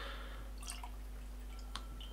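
Whisky poured from a bottle into a tasting glass: a faint liquid trickle, with a couple of light ticks of glass.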